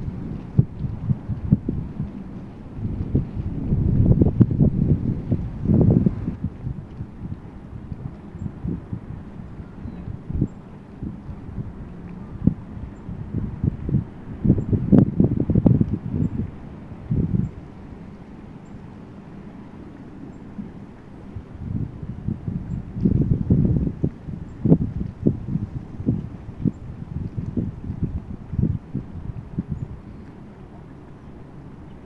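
Wind buffeting the microphone: a low rumble with crackles that swells in three gusts, near the start, midway and in the last third.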